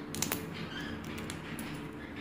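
African grey parrot's beak crunching seeds from a sunflower-seed and grain mix: a few sharp cracks, the loudest about a quarter second in, among fainter clicks.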